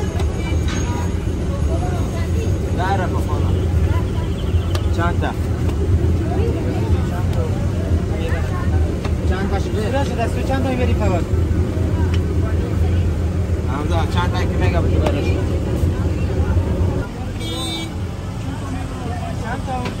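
Busy roadside traffic: a steady low engine and traffic rumble with people talking, the rumble easing off about 17 seconds in. A brief tone sounds shortly after.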